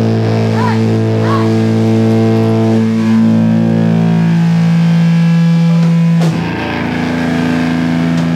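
Amplified electric guitars ringing out a held, droning chord, loud and steady, with a few sliding notes near the start. About six seconds in it breaks off at a sharp strike and a different, lower chord rings on.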